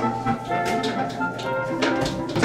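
Background music: an instrumental track with held pitched notes and light percussive hits.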